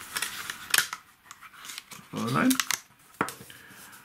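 Stiff glossy photo cards handled by hand, rustling and sliding against each other, with a few sharp flicks: one near the first second and one a little after the third. A short murmur of a voice comes about halfway through.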